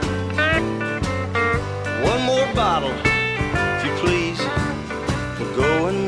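Country-rock band playing an instrumental break: a guitar lead with bending notes over bass and drums keeping a steady beat.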